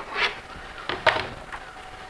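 Handling noise from a 3D-printed plastic helmet and a hot-staple plastic welder being moved: a short squeak near the start and a sharp click about a second in, with light scrapes between.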